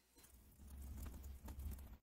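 Faint typing on a computer keyboard, a quick run of keystrokes, over a low hum.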